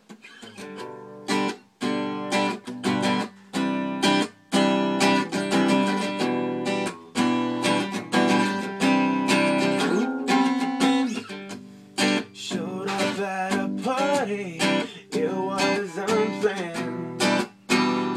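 Acoustic guitar strummed in a steady rhythm, the instrumental intro of a song before the vocals come in.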